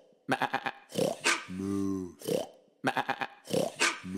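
A dog barking several short times, with one longer, lower call about a second and a half in.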